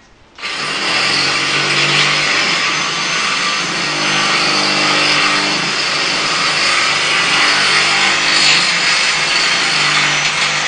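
Electric angle grinder grinding steel, a loud, steady abrasive noise over the motor's hum. It starts about half a second in and cuts off just after the end, and the disc then winds down with a falling whine.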